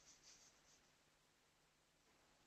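Near silence: faint recording hiss, with a few soft, faint high-pitched puffs in the first second.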